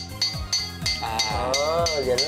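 Background music with a quick, steady percussive beat of about four ticks a second, joined in the second half by a wavering melodic line.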